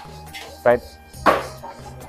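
A stainless-steel chafing-dish lid clanks once against the tray as it is handled, over steady background music.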